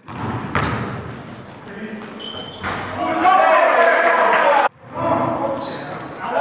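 Basketball game sounds in a large gym: a ball bouncing on the court, short high sneaker squeaks, and players' voices calling out. The sound cuts out abruptly for a moment about two-thirds of the way through and then picks up again.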